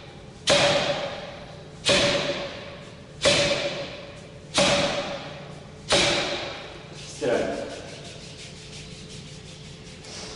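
Forearm strikes on a "Kamerton" (tuning-fork) makiwara, six in all at about one every second and a third. Each blow is a sharp smack that rings on with a steady tone as the post vibrates, and the last one, about seven seconds in, is softer.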